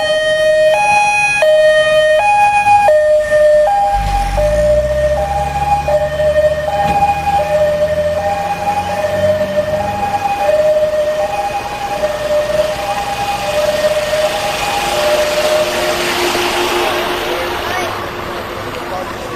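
A Dutch fire engine's two-tone siren, alternating between a high and a low note about every 0.7 s and dropping slightly in pitch after a few seconds. From about four seconds in, a truck engine pulls away with a rising rumble for several seconds. The siren stops a couple of seconds before the end, leaving a steady lower tone and a rushing noise.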